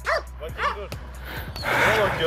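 A pit bull on a leash whining and yelping in short rising-and-falling cries, worked up at the sight of the ball it is being held back from. A burst of noisy sound follows near the end.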